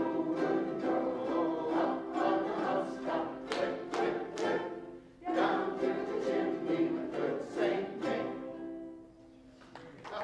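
A group of ukuleles strummed together with a chorus of voices singing along, pausing briefly about halfway through; the final chords die away about a second before the end.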